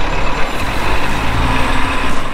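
Coach bus's diesel engine running as the coach drives off, a steady low rumble under broad road and exhaust noise.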